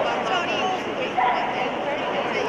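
A dog barks sharply, loudest a little past halfway, over the steady chatter of a large indoor crowd.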